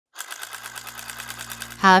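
A fast, even mechanical rattle, about a dozen clicks a second over a low steady hum, with a voice starting to speak near the end.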